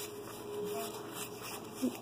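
Faint rustle of Pokémon trading cards sliding against each other as they are thumbed through in the hand, over a low steady room hum.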